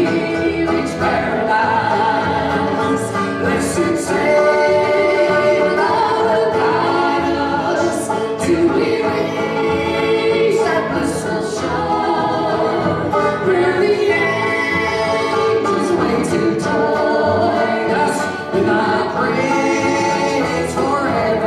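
Three voices singing a gospel song in close harmony, backed by banjo and acoustic guitar.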